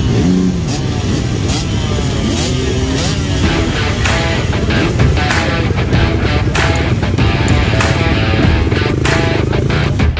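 Several dirt bike engines idling and revving, the pitch rising and falling now and then, with background music playing over them.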